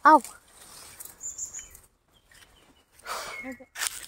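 A woman's short exclamation, then a faint high chirp about a second in, and a rustle with more voice near the end.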